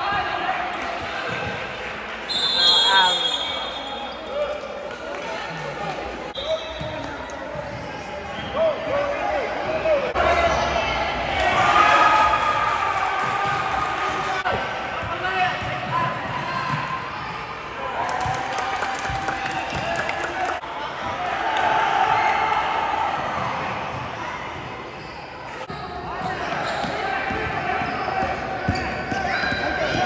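Basketball game in a gym with a hard floor: basketballs bouncing and shouting voices echo around the hall. A referee's whistle is blown sharply about two and a half seconds in, and again briefly a few seconds later.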